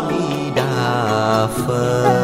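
Buddhist devotional chant sung in long held notes over instrumental music, the melody stepping to a new pitch twice.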